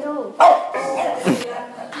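Dog barking; the loudest bark comes about half a second in.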